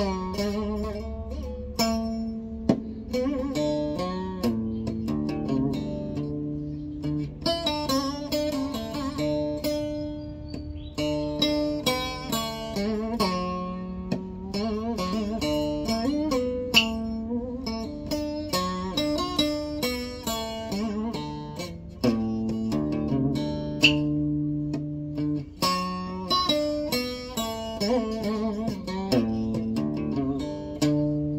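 Solo acoustic guitar with a scalloped fretboard, played in the Vietnamese traditional style: a slow plucked melody with many notes bent and slid in pitch over ringing low notes.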